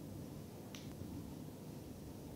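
Quiet room tone with a single short click a little under a second in.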